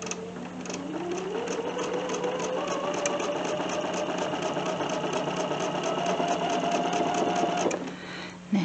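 Bernina 770 QE sewing machine stitching a seam across pieced fabric strips: the motor speeds up over the first second or so, then runs steadily with a rapid even needle clatter, its pitch creeping slightly higher, and stops suddenly near the end.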